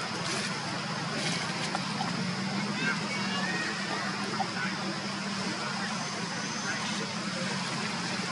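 Steady outdoor background noise with a low hum, faint voices and a few short, high chirps.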